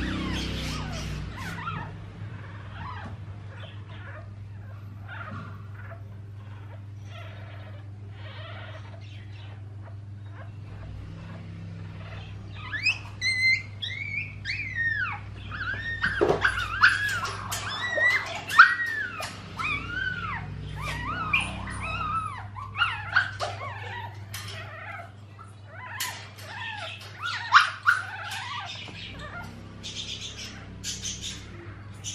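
Newborn poodle puppy crying in short, high, wavering squeals that start a little before halfway and come thickest in the middle, with another cluster near the end, while its tail is handled during docking.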